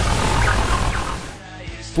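Opening theme music of a television programme's logo sequence, with a regular beat, dropping away sharply about a second and a half in.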